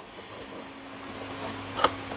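Quiet room tone with a faint steady hum, and one short knock near the end as a cardboard box is handled and turned over on a workbench.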